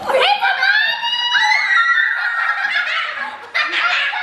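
Several girls shrieking and laughing with excitement: one long high-pitched squeal lasting about three seconds, then a fresh burst of shrieks shortly before the end.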